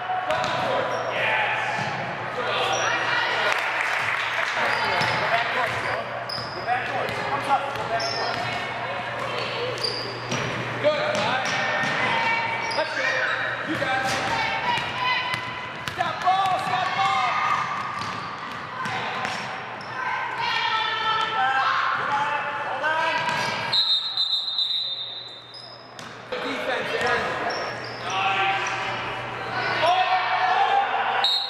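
A basketball bouncing on a hardwood gym floor as players dribble, under continuous voices of players and spectators calling out, echoing in a large gym.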